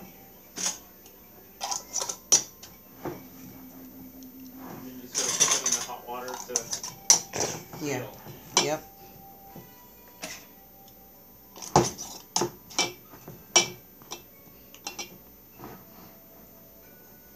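Glass mason jars of canned peaches clinking and knocking as metal lids and screw bands are twisted on and the jars are moved: an irregular series of sharp clicks and taps.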